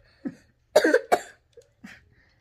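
A few short coughs and laughs from a person, the loudest burst about a second in.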